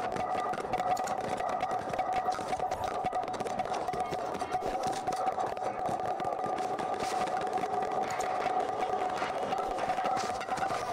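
Steady background drone with a held mid-pitched tone under a noisy hiss, unchanged through the picture cut to the logo.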